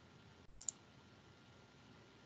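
Near silence broken by two quick, sharp clicks close together, a little over half a second in.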